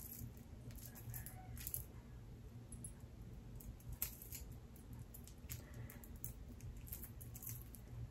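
Faint, scattered small clicks and rustles of a gold-plated chain bracelet with pink flower charms being handled in the fingers, over a low steady hum.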